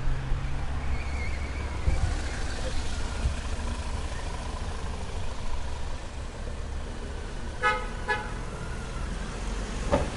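Street background noise with a steady low rumble, then two short toots of a vehicle horn about half a second apart, near the end.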